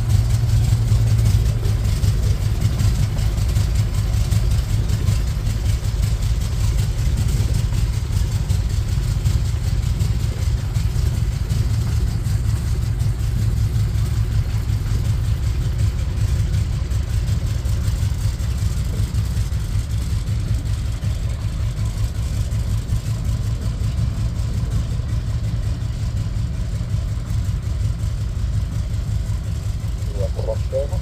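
SAAB B17A's 14-cylinder Twin Wasp radial engine idling steadily with its propeller turning, getting slightly quieter over the half-minute.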